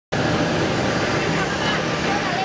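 Steady, continuous road traffic noise with no breaks, with a woman's voice over it.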